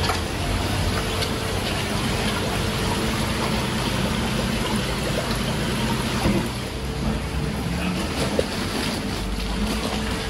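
Steady rush of running water with a low hum from aquarium filtration pumps and sumps.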